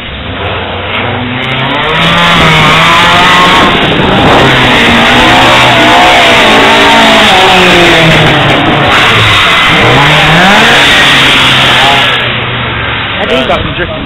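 Ford Escort drift car's engine revving hard, rising and falling in pitch as the car is thrown sideways round the track. It is loudest from about two seconds in and drops away near the end.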